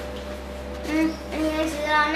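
A child's voice singing over background music, with a few held notes about a second in and near the end.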